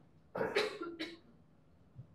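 A person coughing, two short coughs about half a second apart.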